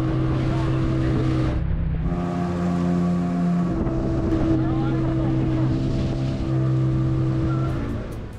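Yamaha Enduro outboard motor running steadily as the boat moves over the sea, a continuous drone whose pitch shifts a few times, with water and wind noise under it.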